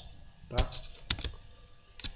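Two quick clicks of a computer keyboard, just after a second in, following a short spoken word.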